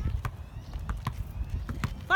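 A basketball being dribbled on an asphalt court: sharp bounces about twice a second, unevenly spaced.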